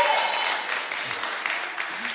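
Congregation applauding, the clapping slowly dying away.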